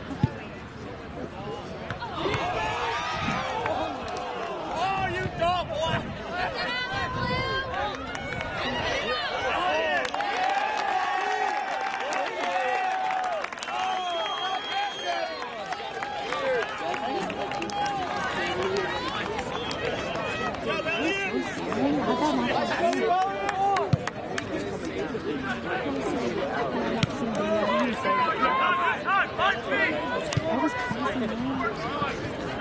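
Spectators near the microphone chattering, several voices overlapping and the words indistinct. There is a sharp knock just after the start and another about 24 seconds in.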